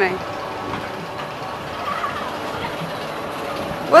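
Steady outdoor amusement-park background noise, an even rumble and hiss, with a faint distant voice about two seconds in.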